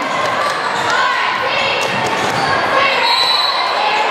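A basketball being dribbled on a hardwood gym floor during live play, with short high squeaks and the voices of the crowd echoing through the gymnasium.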